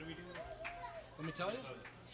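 Faint voices talking in the room, with a few light clicks.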